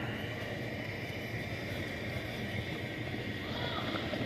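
Steady room tone of a large warehouse store: a continuous hum and hiss with no distinct single event.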